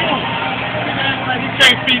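A truck driving past on the street, its engine running steadily, with a man's voice calling out near the end.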